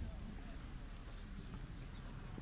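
Footsteps on a stone quay, faint irregular ticks over a low rumble of wind on the phone microphone.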